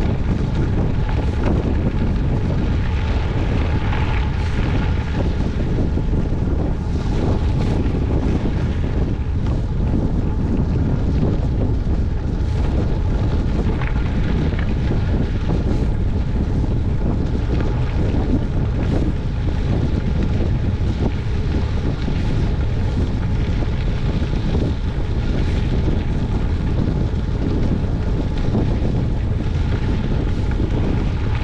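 Wind buffeting the microphone of a bicycle-mounted camera, over the steady rumble of the bike's tyres rolling on a gravel road.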